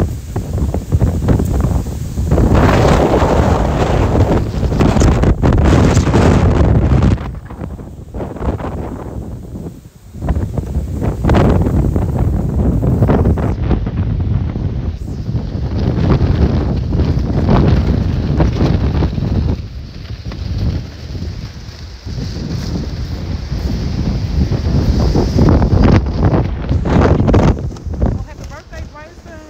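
Wind buffeting the phone's microphone in loud, low rumbling gusts that die down briefly twice before returning.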